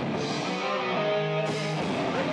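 A metal band playing live with heavily distorted electric guitars and drums. About half a second in the drums thin out, leaving held guitar notes ringing, and the full band comes back in near the end.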